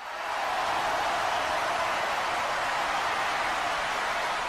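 A steady rushing hiss of noise, swelling in at the start and fading away near the end.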